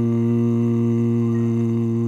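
A bass voice holding one long, steady low note: the final sustained "good" of the hymn's bass line.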